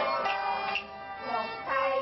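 Cantonese opera singing over traditional Chinese string accompaniment, a sung line with gliding pitches. The music dips in loudness for a moment a little under a second in.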